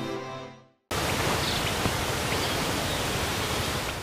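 The tail of a TV news channel's intro jingle fades out, and after a short gap a steady, even hiss of outdoor ambience fills the rest.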